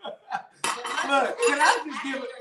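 A fork clinking and scraping against a plate, with laughter and talk over it.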